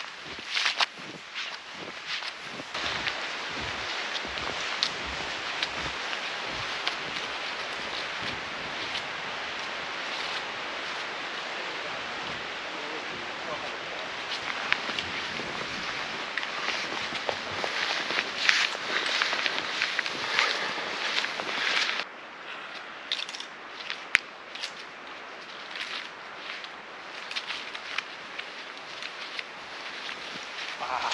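Snowshoe footsteps in deep, fresh wet snow, crunching and swishing with each stride over a steady rushing noise. About 22 s in the sound cuts to a quieter stretch with scattered clicks of steps and poles.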